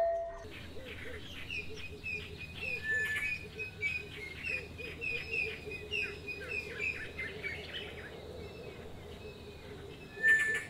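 Birds chirping outdoors: a long run of short, high chirps repeated many times, fading out near the end, over lower, softer repeated calls.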